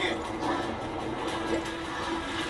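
Television stunt-show audio playing: one steady low droning tone, like a tense music bed, held over a wash of noise, with faint voices in the mix.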